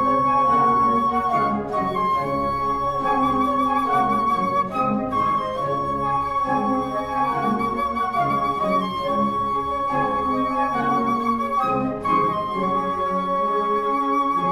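Flute orchestra playing a slow passage: one high note held with a slight waver, broken briefly about three times, over shifting lower chords.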